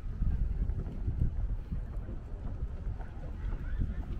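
Wind buffeting the microphone: a gusty, uneven low rumble.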